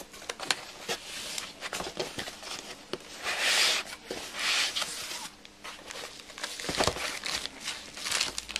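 Packaging being handled by hand as a laptop box is unpacked: scattered clicks and knocks, with two longer bursts of rustling about three and four and a half seconds in.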